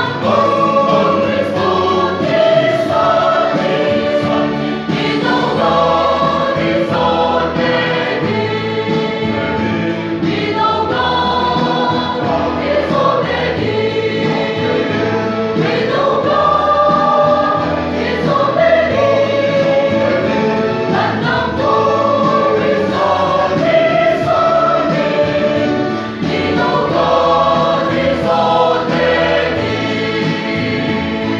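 Mixed choir of men and women singing a hymn, with long held notes throughout.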